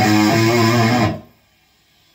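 Cranked Marshall JCM800 valve amp with a Way Huge Green Rhino overdrive in front, playing a distorted electric guitar lead: a descending run of single notes ending on a held low note. The sound cuts off quickly about a second in, leaving near silence.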